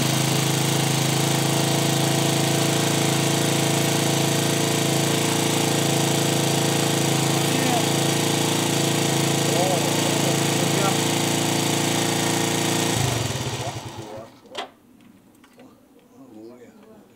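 Motor scooter engine idling steadily, then shut off about thirteen seconds in, running down over about a second. A single sharp click follows shortly after.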